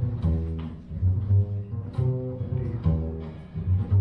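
Upright double bass played on its own: a steady line of low notes, two or three a second.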